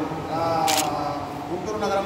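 Men talking in a large, echoey hall, with one short, sharp hiss about two-thirds of a second in.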